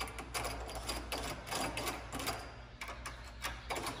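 A bathroom door handle being worked back and forth, its latch mechanism rattling and clicking irregularly many times; the handle does nothing and does not free the latch. A steady exhaust-fan hum runs underneath.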